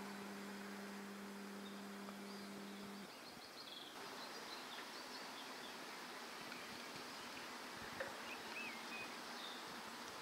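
Faint outdoor evening ambience: the even background noise of a town far below, with a few faint bird chirps. A steady low hum runs for the first three seconds and then stops.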